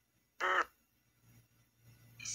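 Ghost box (spirit box) throwing out a single brief, harsh, voice-like fragment of radio sound, about a quarter second long and chopped off abruptly by the sweep, over a faint low hum.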